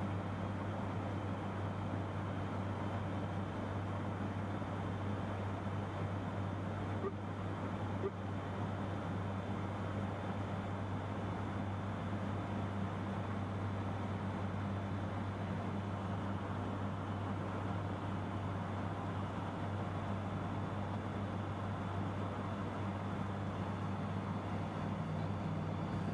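Steady drone of an ATR turboprop cockpit on approach, its engines throttled back toward flight idle: an even rushing noise over a deep, unchanging hum.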